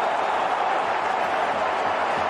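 Large football stadium crowd cheering a goal: a steady, dense wash of many voices.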